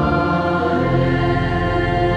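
Church organ holding sustained chords with voices singing along; the chord changes about a second in.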